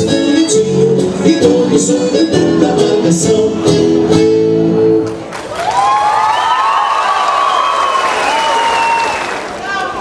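A live band playing a lively gaúcho folk dance tune with a crisp beat, which ends about halfway through; the audience then cheers and applauds, with shouts and whistles.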